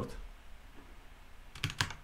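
Typing on a computer keyboard: a few scattered keystrokes, then a quick run of clicks near the end, as a command is keyed into a terminal.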